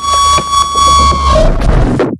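Electronic techno music: a loud, sustained buzzing synthesizer tone over heavy sub-bass, with a noisy wash. The tone stops near the end, and the sound then cuts off suddenly into silence.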